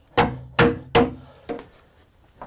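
Hammer blows driving a wedge in behind a wooden flood board in a doorway groove, tightening it so the board seals against flood water: four strikes, the last one lighter, each ringing briefly.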